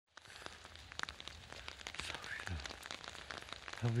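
Rain pattering and dripping as many small, irregular ticks.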